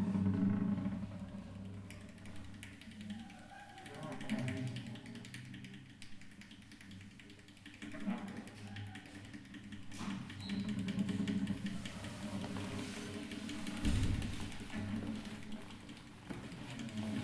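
Unamplified nylon-string classical guitar played with extended techniques: the hands rub and scrape the wooden top and strings, drawing phrases of low, creaking pitched tones. A sharp knock comes about ten seconds in and a low thump a few seconds later, with fine scratching ticks toward the end.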